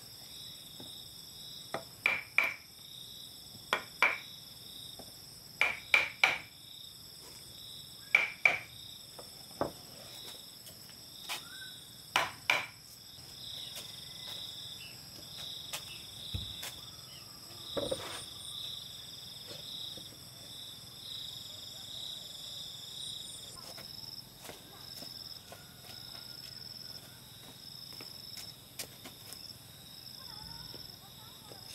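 A hammer strikes a steel chisel set into a round slice of wood, with sharp ringing blows, mostly in pairs about two seconds apart, for the first half. High steady insect chirring runs throughout.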